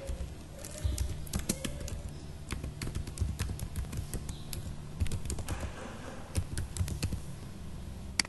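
Typing on a computer keyboard: an uneven run of key clicks as an email address is typed in.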